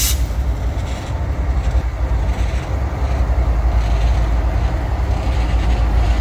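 Florida East Coast Railway diesel locomotives and their LNG tender rolling past at close range: a steady, heavy low rumble of engines and wheels on the rails.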